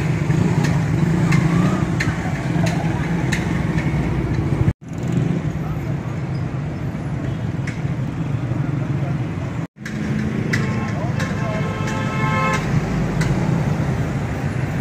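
Street traffic: motorcycle and car engines running and passing, with a vehicle horn sounding for about a second and a half near the end. The sound breaks off abruptly twice where the shots change.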